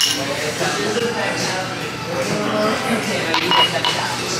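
Drinking glasses clinking together in a toast over people's voices, with a clink right at the start and a short glassy ring about three and a half seconds in.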